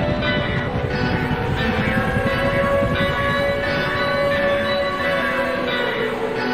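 Intro of a boom bap hip hop instrumental: sustained, layered pitched chords from a sampled instrument, with a long held note that bends slightly in pitch, and no drum beat.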